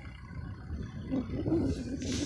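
Wind buffeting the phone's microphone in a low, uneven rumble, with faint distant voices coming in about a second in.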